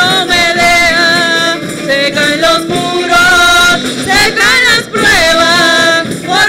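Two women singing a Spanish-language worship chorus through microphones over live musical accompaniment, with long held, wavering notes.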